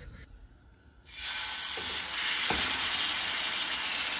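A marinated salmon fillet laid into a hot oiled pan starts sizzling about a second in: a sudden onset, then a loud, steady frying hiss.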